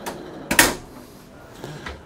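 A galley drawer being opened: one sharp knock with a short ring about half a second in, and a lighter click near the end.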